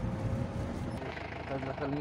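Low, steady engine and road rumble heard from inside a vehicle's cabin, with a voice talking over it from about a second in.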